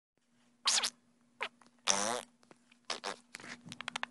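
Small shaggy white dog making a series of short vocal noises: a few separate bursts, one longer pitched sound about halfway through, then a quick run of short sounds near the end. A faint steady hum runs underneath.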